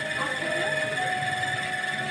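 Soft held instrumental notes from the kirtan accompaniment, a few of them changing pitch slightly, over a steady high-pitched whine.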